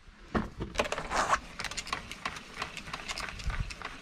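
Irregular light clicks and knocks from a motorhome's roof skylight, its latch and crank handle being worked.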